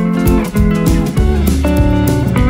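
Background music: a guitar tune over a steady beat.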